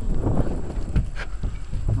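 A few short knocks and clicks of a metal hinge pin and bracket being handled on a solar panel mount, over a low rumble.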